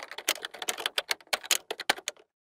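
Fast typing on a computer keyboard: a quick, irregular run of key clicks, several a second, that stops just after the end.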